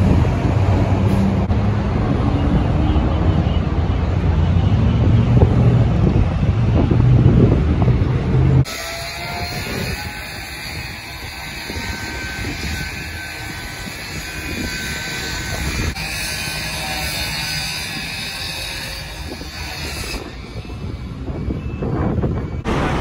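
Wind buffeting the microphone over a low, steady rumble of engines on the freeway, ending abruptly at a cut about a third of the way in. After the cut comes a quieter outdoor roadside ambience with faint steady tones.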